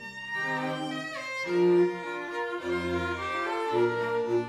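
A small string ensemble of violins, cello and double bass playing classical chamber music, bowed notes moving in chords that change about every half second. The sound thins briefly at the very start, and a deep low note sounds under the chords about three seconds in.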